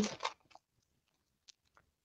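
The end of a spoken word, then near silence with a couple of faint, brief ticks.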